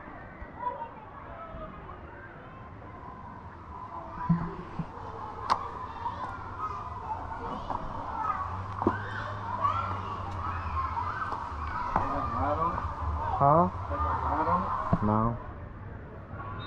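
Indistinct voices of other people, children among them, talking and calling in the background, with a single sharp click about five and a half seconds in.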